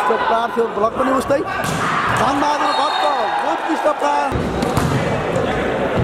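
A volleyball being struck hard during a rally: a few sharp smacks of the ball, echoing in a large indoor hall, with voices calling and shouting throughout.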